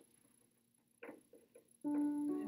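Near silence for about a second, then a few faint brief sounds. Near the end, background music with plucked-string notes starts.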